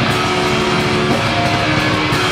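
Death metal band playing live: heavily distorted electric guitars holding notes that shift pitch about a second in, over dense, fast drumming.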